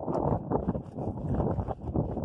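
Wind buffeting the microphone: an uneven, gusty rumble that rises and falls.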